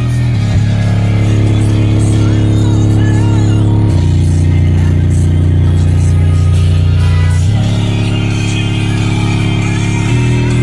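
Loud bass-heavy music played through two Rockford Fosgate Punch P3 15-inch car subwoofers powered by an Autotek four-channel amplifier. Long deep bass notes hold steady and shift pitch about four seconds in and again a few seconds later.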